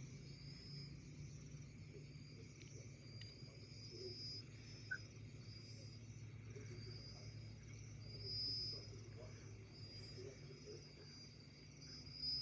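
Near silence: faint room tone with a low hum and a faint, repeated high-pitched chirping like insects, and a single faint tick about five seconds in.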